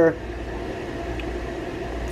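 A steady, even mechanical hum with a hiss under it, holding level without change.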